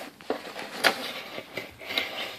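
Cardboard pizza box handled on a wooden table: a few light knocks and scuffs as it is set down and its lid is lifted, the loudest knock a little under a second in.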